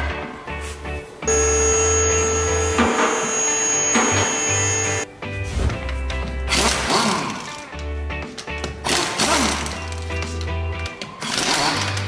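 Background music with a steady beat, over which a pneumatic impact wrench with a 17 mm socket runs in several short bursts on the wheel bolts in the second half.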